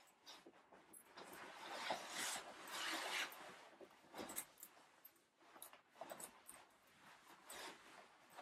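Leather bomber jacket rustling faintly as it is pulled on over the arms and shoulders, loudest for a couple of seconds early on, then a few light taps and brushes as the collar and front are straightened.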